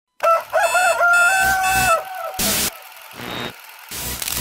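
A recorded rooster crowing one long cock-a-doodle-doo of nearly two seconds, followed about half a second later by a short burst of noise.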